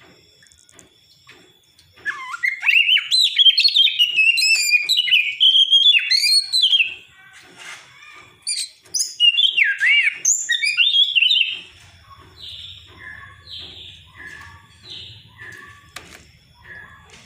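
Oriental magpie-robin (white-breasted kacer) singing a loud, varied song of gliding whistles and warbles. From about twelve seconds in it turns to a quieter series of short, repeated falling notes.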